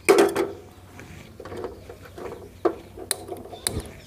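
A small metal pan clanks and rings as it is set on a gas stove's burner grate, followed by a few sharp clicks and knocks of handling near the end.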